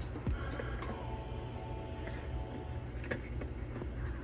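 Quiet background music with a few long held notes, over a steady low hum.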